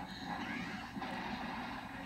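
Two women crying out and squealing in short strained bursts as they grapple in a fistfight.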